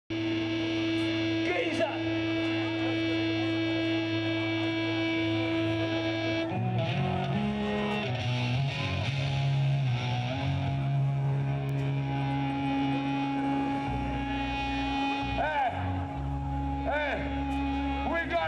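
Electric guitar and bass through stage amplifiers holding long distorted notes, the pitch shifting three times, with amplifier hum beneath.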